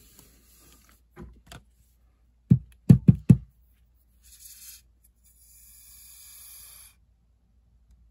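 Four loud, quick thumps about two and a half seconds in as a plastic fine-tip squeeze bottle of fabric glue is shaken and knocked tip-down to bring the glue into the nozzle, since it had been standing upright. A few seconds later comes a hiss from the bottle as it is squeezed through its tip.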